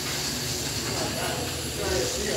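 Several 1RC asphalt modified radio-controlled cars racing on a concrete oval: a steady, high-pitched whir of their small electric motors and tyres.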